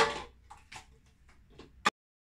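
Irregular sharp taps and knocks of plastic cups set down and moved on a wooden tabletop, the loudest at the start and another just before the sound cuts off abruptly.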